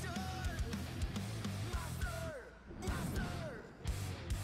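Rock song playing: an electric guitar lead with notes sliding in pitch over a steady drum beat. The band drops out briefly twice in the second half.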